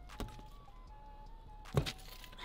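Faint background music, with a small click just after the start and a short thump near the end as a tire-plug insertion tool is pulled out of a knobby ATV tire, leaving the plug in the puncture.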